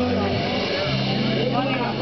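A live band's last chord held and dying away at the end of a song, with low steady notes ringing on, and audience voices coming up near the end.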